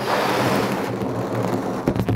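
A person blowing one long, steady breath into a rubber balloon to inflate it, with a short break near the end.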